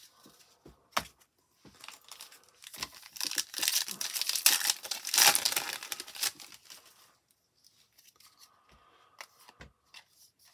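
Foil wrapper of a Topps baseball card pack torn open and crinkled, a noisy tearing stretch starting about three seconds in and lasting about three seconds. A few light clicks come first.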